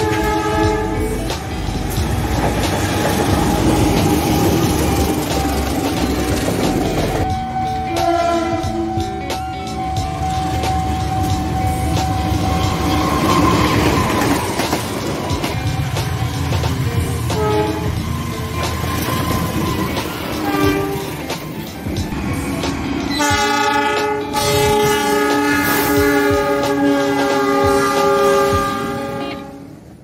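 A train with a diesel locomotive passing and sounding its horn, a chord of several tones. There are short blasts at the start and around eight seconds in, and a long blast near the end, over the rumble of the engine and wheels on the rails. The sound fades out at the very end.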